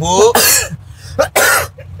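A man coughing twice, about a second apart.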